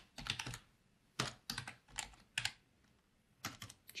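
Computer keyboard being typed on in three short bursts of keystrokes, with gaps of about a second between them.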